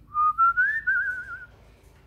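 African grey parrot giving a single whistle that slides upward, then wavers in a quick trill before stopping.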